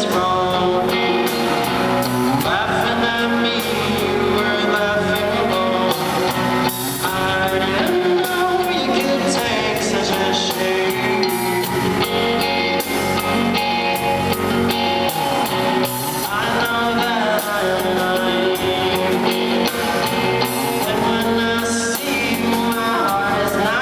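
Live rock band playing a song, with electric guitar, drums and a singing voice.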